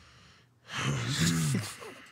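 A man's breathy vocal outburst about a second in: a sudden rush of breath with voice in it, lasting about a second, louder than the talk around it.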